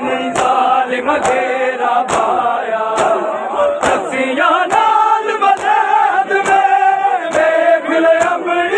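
A large crowd of men chanting a noha in unison, loud and sustained, with the sharp slaps of matam (open hands striking bare chests together) landing in time, a little more than once a second.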